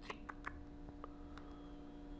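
A handful of soft, irregular clicks from a laptop touchpad as it is used to open Task Manager, over a faint steady hum.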